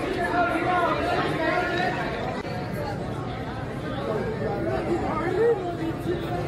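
Indistinct, overlapping speech and chatter of several people in an airport terminal, including a voice asking "are you good, are you good".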